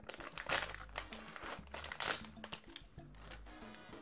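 Plastic candy packaging crinkling and rustling in irregular bursts as it is handled and opened, loudest about half a second and two seconds in.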